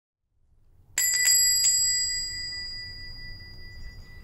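A small metal bell hung on a wooden door, rung by the door swinging open: three quick strikes about a second in, then a high ringing that fades away.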